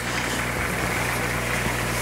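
Steady hiss of water and air bubbling in a large aquarium, over a low steady hum.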